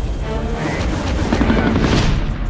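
Helicopter in flight, its engine and rotor noise steady and loud, with music running underneath.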